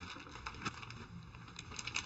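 Quiet room tone with a few faint, small clicks and rustles.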